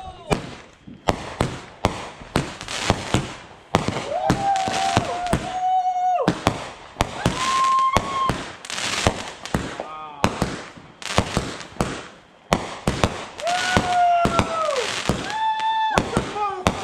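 Aerial fireworks going off in quick succession: a dense, irregular run of sharp bangs and crackles. A few held pitched tones about a second long sound among them, about four seconds in, again near eight seconds, and twice near the end.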